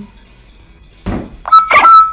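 A training dagger's flat hitting a target with a thunk about a second in, followed by a loud, held synthetic tone that the sensor software generates from the blade's vibration waveform, marking a flat hit with a lot of vibration.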